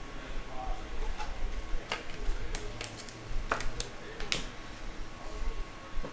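Handling noise from trading cards and their holders on a table: a few scattered sharp clicks and light taps over a low room hum.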